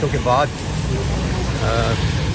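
Rainy city street ambience: a steady low rumble of road traffic under an even hiss of rain and wet pavement, with short snatches of a voice near the start and near the end.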